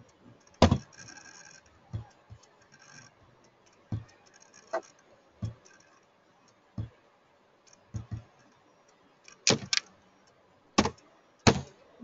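Computer keyboard and mouse clicks: about a dozen sharp, irregular taps, some in quick pairs.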